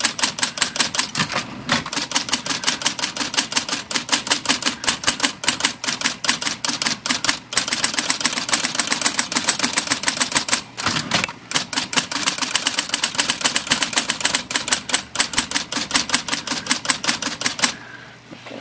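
IBM Model C electric typewriter typing a rapid test run of capital letters: its power-driven typebars strike the platen in a fast, even clatter over the steady hum of the running motor, with two short breaks midway. It is a test of type impression on a newly installed power roll.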